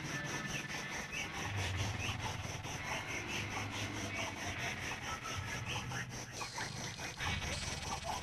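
A quiet break in the soundtrack: a rapid, even scraping rhythm, about five strokes a second, that stops about six seconds in.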